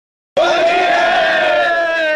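After a moment of silence, a loud vocal call starts and is held as one long steady note. It opens a recorded Holi song soundtrack.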